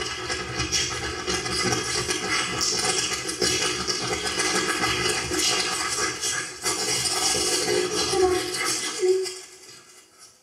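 A sheet of paper crumpled and rustled close to a microphone, a dense crackling noise that stops suddenly about nine seconds in.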